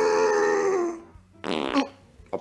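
A high, strained character yell held for about a second, sliding slightly down in pitch, the sound of straining to power up; after a short pause comes a brief raspy burst.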